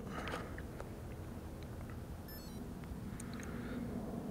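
Quiet outdoor background with a few light clicks from the buttons of a handheld Garmin Forerunner GPS being pressed as it is reset.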